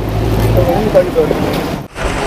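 People talking in the background at a busy fishing harbour, over a low engine rumble that stops about two-thirds of a second in.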